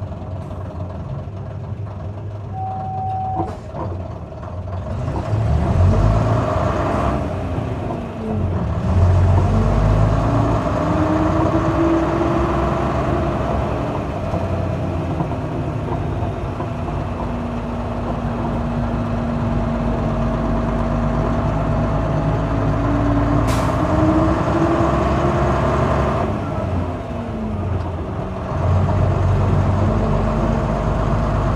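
The Leyland O.680 diesel engine of a Leyland Atlantean double-decker bus under way, its pitch climbing and dropping several times as the bus accelerates through its semi-automatic gearbox. A short beep sounds about three seconds in, and a sharp click comes about two-thirds of the way through.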